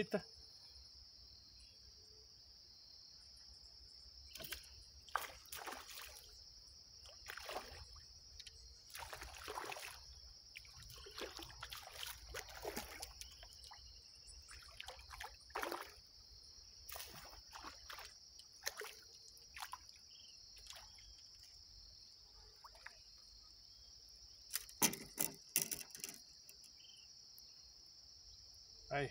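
A steady high insect chorus of crickets, with scattered splashes and knocks as a tilapia is hooked on a pole and brought in from the water. The loudest cluster comes near the end.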